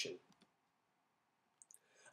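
Near silence: quiet room tone, with a pair of faint clicks near the end.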